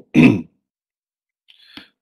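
A man briefly clears his throat, one short voiced burst, followed by dead silence and a faint breath in about a second and a half in.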